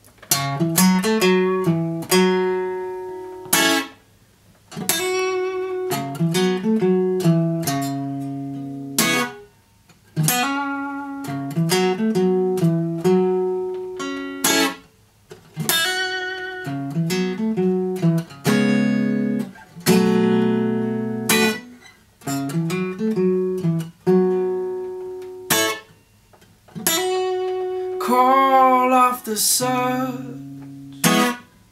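Steel-string acoustic guitar fingerpicked, playing a song's intro in ringing phrases of about three to four seconds, each broken by a brief pause. A singing voice comes in near the end.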